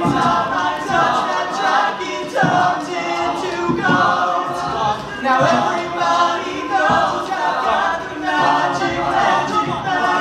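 A male a cappella group singing in harmony, several voices in chords with no instruments. A regular pulse of louder accents comes about every second and a half.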